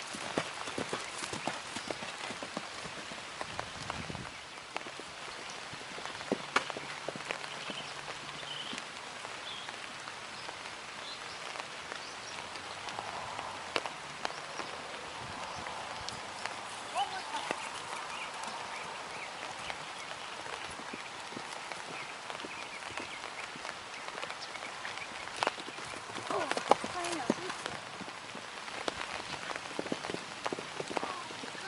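Steady rain falling, an even hiss with scattered sharp ticks of drops through it.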